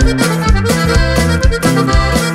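Instrumental break of a Mexican regional band song: button accordion carrying the melody over bass and a steady beat.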